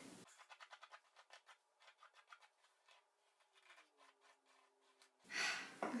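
Faint, quick strokes of a paddle hairbrush pulled through long wet hair, several a second, thinning out to near silence about halfway through.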